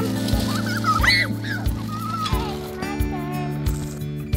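Background music with steady sustained tones, with a high-pitched voice calling over it in the first half.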